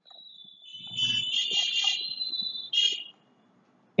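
High-pitched electronic sound effect: a shrill, alarm-like tone lasting about three seconds, with a short second burst near the end.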